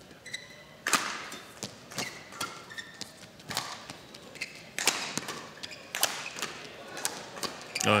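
A badminton rally: rackets striking a shuttlecock in a fast exchange, a sharp smack about every half second to second, with short squeaks of court shoes on the mat between shots.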